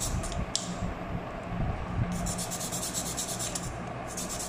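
Sanding stick rubbed back and forth over the edge of a styrene plastic model-kit armour part, in quick scraping strokes. There are a few strokes early on, then a fast even run of them starting about two seconds in. The raised edge is being sanded down flush so that plastic plates glued on top will sit even.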